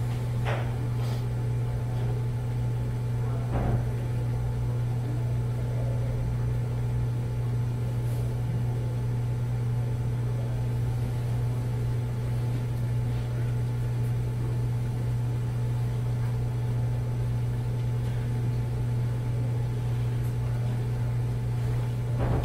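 Steady low hum of a quiet conference room, with a couple of faint knocks, one about half a second in and a slightly louder one a few seconds in.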